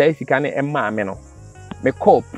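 A man speaking for about a second, then a pause, over a steady high-pitched chirring of insects that runs throughout.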